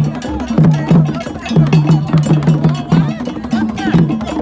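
Traditional Ghanaian drum ensemble playing dance music: hand drums beating quick, even strokes, with a sharp bell-like clanking part struck over them.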